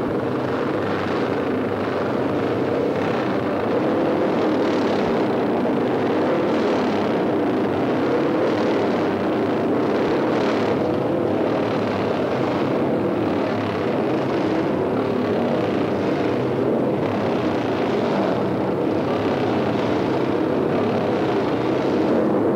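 Several vintage racing motorcycle engines running together in a steady, dense drone, swelling and easing every couple of seconds as throttles are opened.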